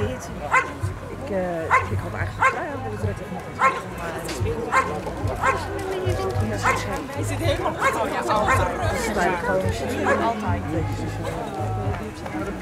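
A dog barking repeatedly at a helper hidden in a blind, sharp single barks about once or twice a second: the bark-and-hold of the IPO protection test.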